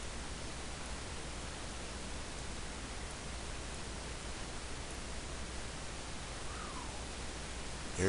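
Steady hiss of the recording's background noise, with a low hum underneath and no other clear sound.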